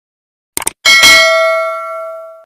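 Subscribe-button sound effects: a quick double mouse click a little past half a second in, then a bright notification-bell ding that rings on and slowly fades.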